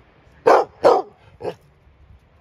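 A dog barking three times in quick succession, the third bark weaker and shorter than the first two.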